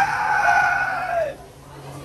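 A person's long, high-pitched shriek, held steady and then falling in pitch as it breaks off just over a second in.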